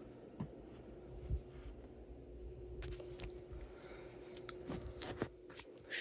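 Faint handling noise from a handheld camera being moved: scattered soft clicks and knocks over a steady low hum.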